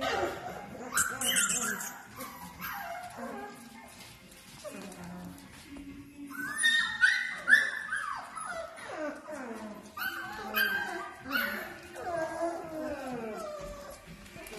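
Young Bernese Mountain Dog puppies whimpering and yipping in short, falling calls, with a louder run of high yelps about halfway through.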